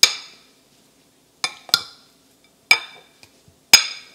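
Metal potato masher pressing boiled potatoes in a glass bowl, its head striking the glass with five sharp clinks that ring briefly. The clinks come at uneven intervals, two of them close together, and the loudest fall at the very start and just before the end.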